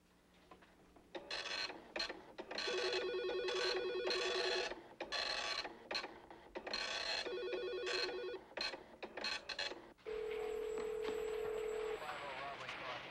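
Telephone bell ringing, two long rings a few seconds apart; about ten seconds in it gives way to a steady telephone dial tone.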